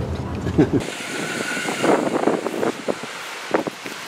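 Low road and engine rumble inside a Renault Arkana's cabin, cut off abruptly about a second in, giving way to outdoor sound: wind on the microphone with voices.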